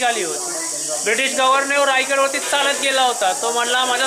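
A man talking continuously, his voice sliding down in pitch in a short pause near the start, over a steady high-pitched hiss.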